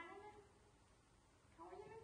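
Faint short cries from a baby macaque monkey: one call trails off just at the start, and a second short rising call comes near the end.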